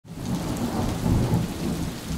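Steady rain with a low rumble of thunder, fading in at the start.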